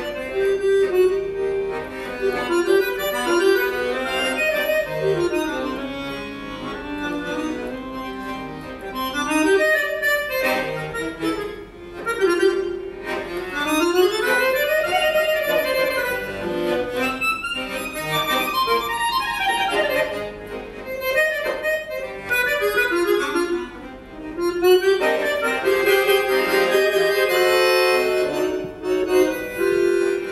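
Solo button accordion playing a melody of rising and falling runs, then louder held chords for the last few seconds.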